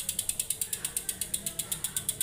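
Bicycle rear freehub ticking steadily as the rear wheel spins freely, about ten even clicks a second.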